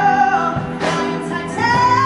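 A woman singing long held notes into a microphone over a live band of electric guitar, drums and keyboard, moving up to a higher held note near the end.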